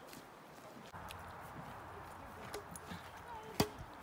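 Badminton racket striking a shuttlecock: one sharp pock about three and a half seconds in, with a couple of fainter taps before it, over quiet outdoor background.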